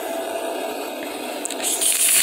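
A fabric blanket rustling and rubbing against the microphone as it is handled, a steady swishing that gets louder and hissier near the end.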